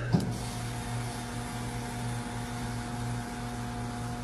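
A refrigerator's steady low electrical hum with a few faint, even tones above it, picked up in the room during a live stream. A single brief click comes just after the start.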